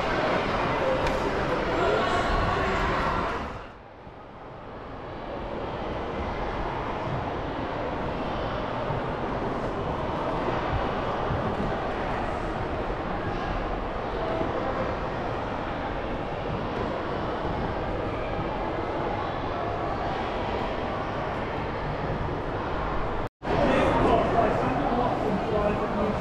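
Indistinct chatter of visitors and general hall noise in a large, echoing indoor space. The sound dips and fades back in about four seconds in, and cuts out briefly for an instant a few seconds before the end.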